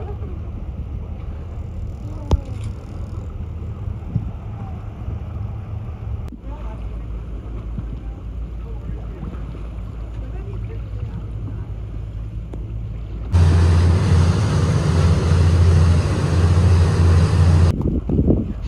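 A small tour boat's engines droning steadily, with water and wind noise. The sound jumps in level at two cuts and becomes much louder for the last few seconds, a strong low hum with rushing noise over it.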